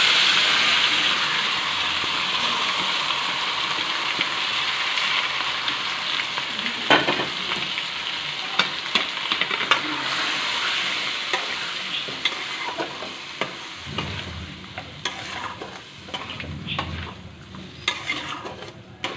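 Marinated mutton sizzling hard as it hits hot oil in an aluminium kadai, the sizzle slowly dying down. From about seven seconds in, a spatula stirring and scraping the meat, with sharp knocks against the pan that grow more frequent near the end.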